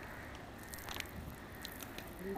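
Faint outdoor background noise, a steady low hush with a few brief, faint high chirps.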